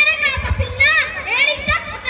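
Speech: a child's high voice speaking lines in a loud, continuous stream.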